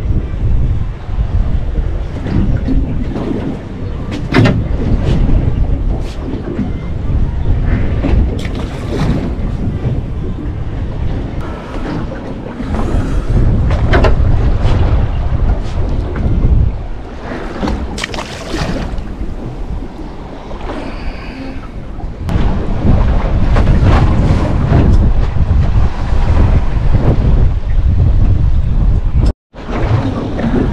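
Wind rumbling and gusting across the microphone on an open boat at sea, over the wash of the sea, with a few short knocks.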